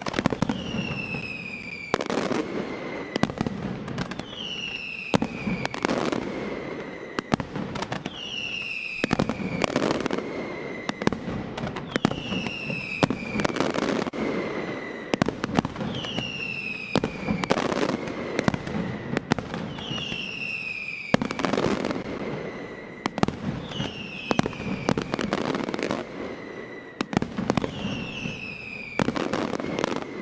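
Mascletà firecrackers going off over and over in quick succession, sharp bangs high in the air. About every two seconds there is a falling whistle, each lasting around a second.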